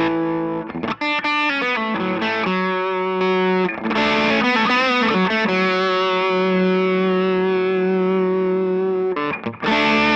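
Electric guitar played through the Psionic Audio Telos overdrive pedal with its boost engaged, into a guitar amp. The overdriven tone plays chords and short phrases, then one long sustained note in the middle, and breaks off briefly near the end.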